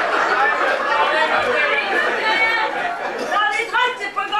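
Speech: several voices talking over one another, with one voice standing out clearly near the end.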